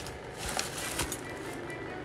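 Quiet room tone with a couple of faint soft clicks about half a second and a second in, as of small objects being handled.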